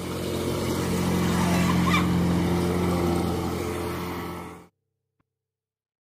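A motorboat's engine running steadily under a broad rush of noise. The sound swells in, eases off, then cuts off abruptly about two-thirds of the way through.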